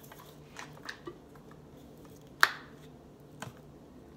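Plastic ketchup squeeze bottle being picked up and handled, with a few light clicks and one sharp snap about two and a half seconds in as its flip-top cap is opened.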